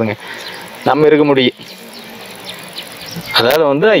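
A man speaking in short phrases, with a faint steady buzz of insects behind the pauses.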